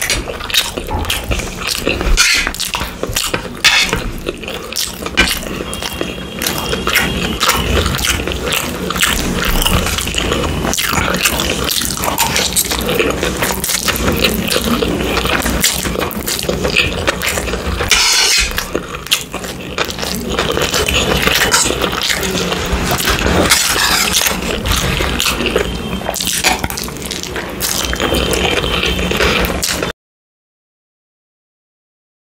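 Close-miked eating sounds: wet chewing and slurping of stir-fried noodles, with a metal spoon scraping on the plate and bowl.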